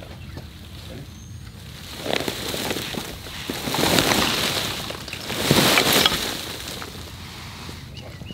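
Dwarf Alberta spruce being ripped out of the ground with a tow strap: roots tearing and branches and needles rustling in a few heavy surges, loudest about four and six seconds in, as the shrub tips over.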